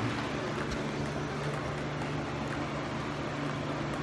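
Steady machine hum with a constant low drone under an even hiss, unchanging throughout.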